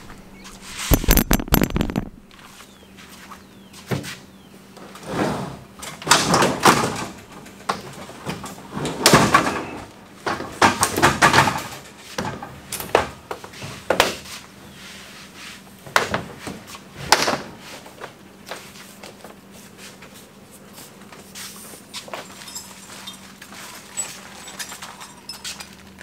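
Irregular thumps, knocks and scrapes of materials being handled and unloaded from a pickup truck bed, among them a large coil of poly pipe being pulled off the tailgate. The knocks come in a run of separate bursts and thin out over the last several seconds.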